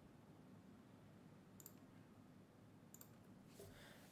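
Near silence with two faint computer-mouse clicks, one about one and a half seconds in and another about three seconds in.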